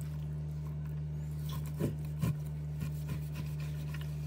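Knife cutting and scraping along raw beef short ribs on a plastic cutting board, with a few short knocks of the blade on the board about two seconds in and again near three seconds. A steady low hum runs underneath.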